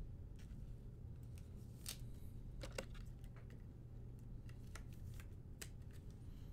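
Trading card being handled and fitted into a clear plastic card case: a run of short scratchy scrapes and clicks, the loudest about two and three seconds in, over a steady low room hum.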